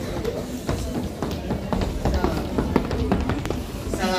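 Indistinct voices and room noise, with many short knocks and thumps scattered through.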